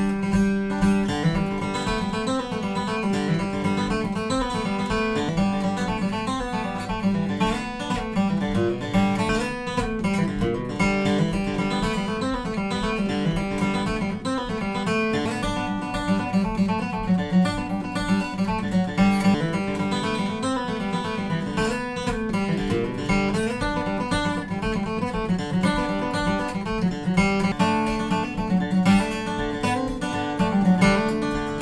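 Steel-string dreadnought acoustic guitars with spruce tops and East Indian rosewood back and sides, strummed and picked in a steady chordal pattern. Two near-identical Bourgeois dreadnoughts are played in turn, one built in the US and one a Touchstone assembled in China.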